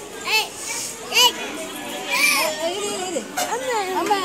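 Young children's voices at play: a string of short, high-pitched shouts and calls.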